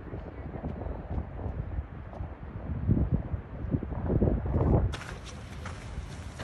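Wind buffeting the microphone: low rumbling gusts that swell about three seconds in and again just before the end, then drop away suddenly.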